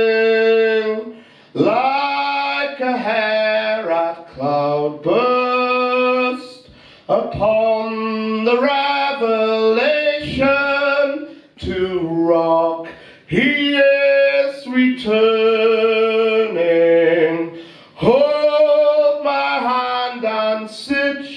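A man singing a cappella through a microphone: long held notes that slide between pitches, in phrases of one to three seconds with short breaths between them.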